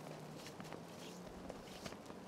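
Faint footsteps crunching in fresh snow on a forest path, soft irregular steps with a few light clicks.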